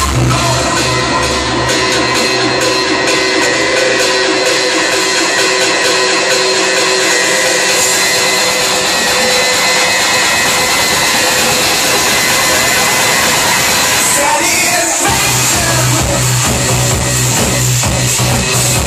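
Loud electronic club dance music from a live DJ set. The heavy bass drops out for a long breakdown and slams back in about three seconds before the end.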